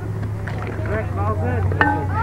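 Indistinct background chatter of players and spectators around the ball field, over a steady low hum, with a short call standing out near the end.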